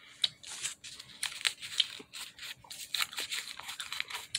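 A foil-backed paper gum wrapper crinkling and rustling as it is handled and folded by hand, in a run of irregular crisp crackles.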